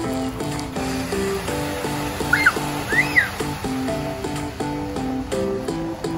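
Background music: a bouncy melody of short stepped notes in an even rhythm. Two brief high squeals, each rising and falling, come partway through.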